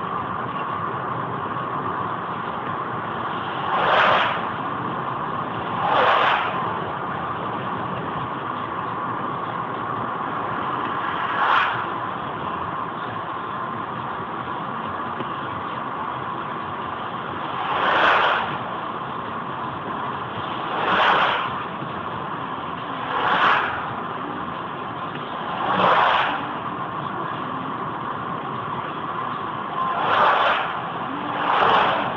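Steady road and engine noise inside a car cruising on a highway at about 75 km/h, played about three times faster than real time. Seven brief whooshing swells rise and fall as oncoming vehicles pass.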